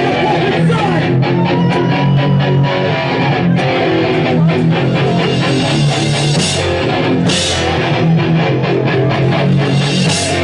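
Hardcore band playing live: distorted electric guitar and a drum kit with repeated cymbal crashes, in a slow, heavy song.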